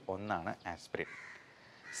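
A man speaking for about the first second, then a pause. A faint bird call carries in the background near the end.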